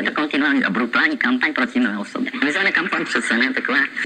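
Hand-cranked wooden box 'street organ' playing back a looped recording of a man's voice, repeating the Czech phrase 'to je to' over and over while the handle is turned. The voice's pitch wavers throughout.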